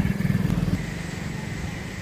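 Small motorcycle engine running as it rides past close by, loudest in the first second and then fading.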